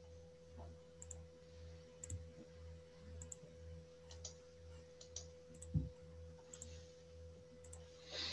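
Quiet room tone over an open video-call microphone: a steady electrical hum, faint light clicks about once a second, and one soft thump a little before six seconds in.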